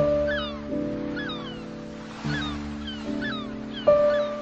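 Background music of slow, sustained piano-like chords, each struck sharply and left to fade. Over it, a short rising-and-falling animal call repeats about five times, roughly once every three-quarters of a second.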